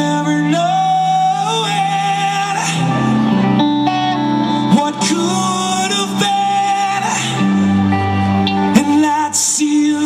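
Live band playing: electric guitar and bass guitar over drums, with a sustained lead melody line that bends and wavers in pitch.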